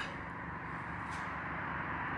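Steady low outdoor background noise, with a faint tick about a second in.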